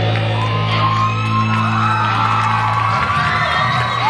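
A live rock band's final held chord, with electric guitars and bass ringing out, cutting off about three seconds in. Audience whoops and shouts rise over it as the song ends.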